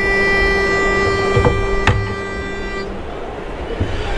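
A pitch pipe sounding one steady reedy note to give the starting pitch for an a cappella quartet. The note is held until about three seconds in, then stops, with a single sharp click about two seconds in.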